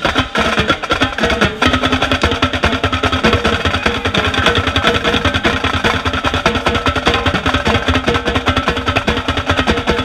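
Marching drumline playing a cadence, with a set of marching tenor drums (quads) struck close by in rapid, continuous strokes.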